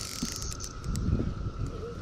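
Spinning rod and reel being worked against a hooked grass carp: low handling and wind rumble with a few faint ticks, over a steady high whine.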